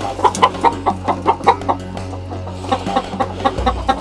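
Game hens cackling in alarm at a snake in the coop, a quick unbroken run of short clucks at about five a second.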